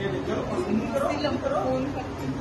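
Indistinct chatter of voices.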